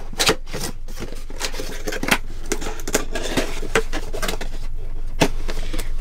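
Cardboard box being handled and its flaps folded shut, with irregular taps, scrapes and rustles of cardboard and the cups inside.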